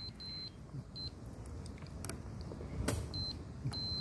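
Multimeter continuity beeper sounding in short, broken beeps as the probes make and lose contact with a crushed calaverite grain, then holding a steady tone near the end. The beep means current is passing through the grain.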